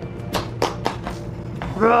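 Large chef's knife cutting down through a pumpkin's hard rind, making four quick knocks in the first second.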